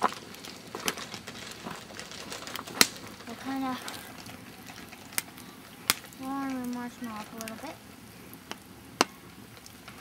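Wood campfire crackling, with sharp pops scattered through it, the loudest just under three seconds in.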